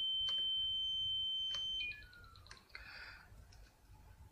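Piezo buzzer driven by a sine-wave generator, sounding a steady high tone of about 3 kHz near its resonant frequency, then cutting off a little under two seconds in. A few faint, brief, lower tones follow, stepping down in pitch as the generator frequency is turned down.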